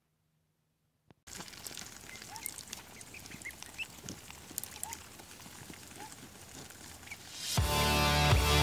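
Half-grown ducklings peeping with short rising calls while pecking food from a hand, with many small clicks, starting about a second in after near silence. Music comes in loudly near the end.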